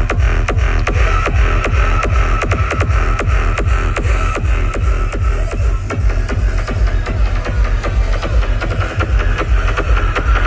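Loud live music from an outdoor stage's sound system, with a steady fast beat and heavy bass.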